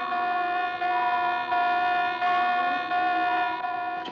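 Warship's general-quarters alarm sounding: one steady, harsh tone with many overtones, stepping slightly up and down in pitch about every three-quarters of a second.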